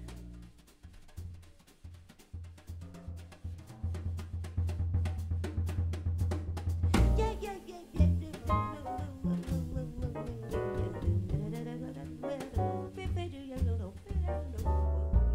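Live jazz band of piano, double bass and drum kit playing: steady drum and cymbal strokes over double bass notes, the music growing fuller about halfway through.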